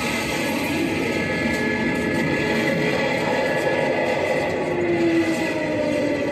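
Loud live band music: a group of large drums beaten with sticks in a dense, continuous roll, with held melodic notes over it, some of which slide downward in pitch in the second half.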